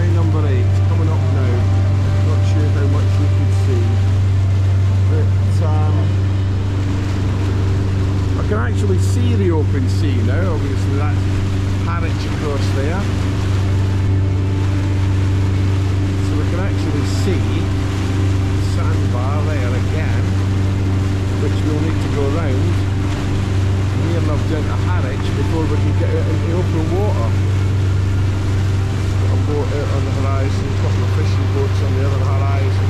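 Outboard engine of a small motorboat running at a steady cruising speed: a constant low drone, with water rushing past the hull.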